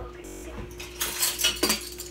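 Utensils clattering as someone rummages in a drawer for metal measuring spoons: a quick run of clinks and knocks, loudest a little past a second in, over a steady low hum.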